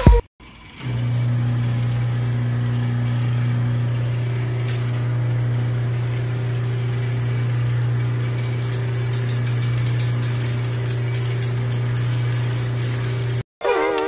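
Bathroom-cleaning robot running at real speed: a steady low motor hum with a few faint clicks, which stops abruptly near the end.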